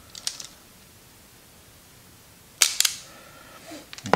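Tacklife wire stripper clicking as it strips insulation from the ends of a wire. There is a quick cluster of small clicks just after the start, then two sharp snaps about two and a half seconds in.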